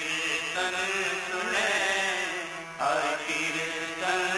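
Sikh shabad kirtan: male voices sing a devotional hymn in long, melismatic phrases over a steady harmonium drone, with tabla accompaniment.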